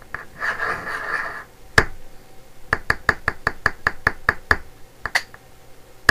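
A short hiss, then a quick run of about a dozen sharp taps or clicks, about five a second, with a couple more shortly after.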